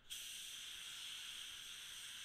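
SATAjet RP spray gun at 30 PSI triggered, spraying base coat: a steady hiss of air and atomized paint that starts abruptly.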